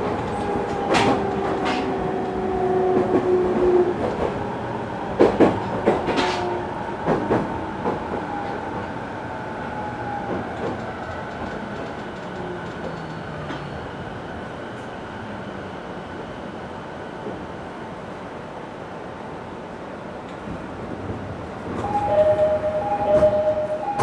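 JR 209 series electric train slowing down: the traction motor whine falls in pitch over the first few seconds, with wheel clicks over rail joints, and the running noise fades as the train comes to a stop. Near the end a two-note chime sounds.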